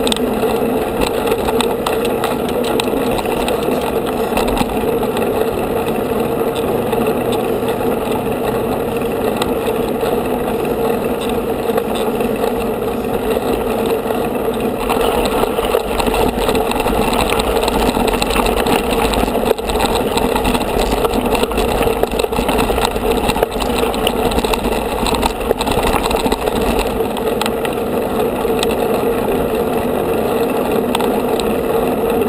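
Steady rolling and wind noise from mountain bikes on a paved road, picked up by a rider's action camera moving with the pack, with a constant low hum.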